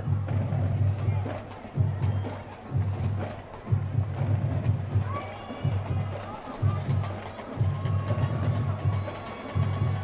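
Band music from the stadium stands: percussion keeps a beat in loud low-pitched pulses about a second long with sharp stick-like clicks, and a steady held tone comes in near the end.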